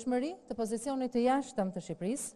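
Only speech: a woman speaking Albanian into a microphone.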